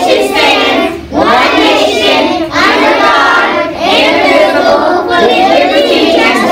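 A class of young children singing together in unison, with hands on hearts, in phrases of one to one and a half seconds with short breaks between them.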